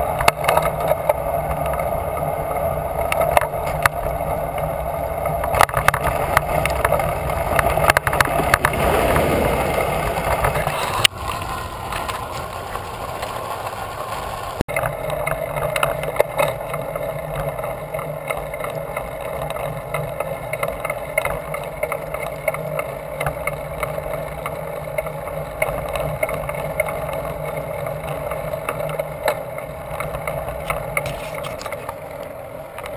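Bicycle riding at speed, heard from a handlebar-mounted camera: steady wind and road noise with frequent small clicks and rattles. About nine seconds in, a louder whoosh falls in pitch.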